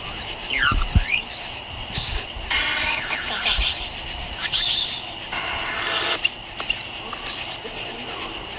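Steady night chorus of crickets and other insects, with several short raspy bursts between about two and seven and a half seconds in and a couple of brief squeaky glides near the start.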